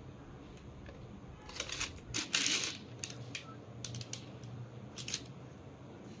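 Handling noise from a sneaker being moved in its cardboard box: a run of short rustles and light clicks starting about a second and a half in, loudest around two and a half seconds, and stopping a little after five seconds.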